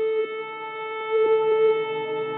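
Ambient solo guitar music: a long held note with a ringing stack of overtones, a few soft plucked notes over it, swelling louder about a second in.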